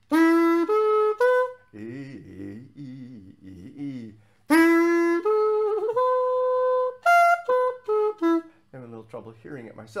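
A xaphoon (pocket saxophone) playing major-triad arpeggios in clean, separate notes. First come three quick rising notes. About halfway in comes an E major arpeggio that climbs to the top E and comes back down. Softer humming or singing of the notes fills the gap between the runs and the last second or so.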